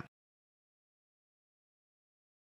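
Silence: the sound track is blank, with no room tone and no keyboard sound, after the tail of a spoken word cuts off right at the start.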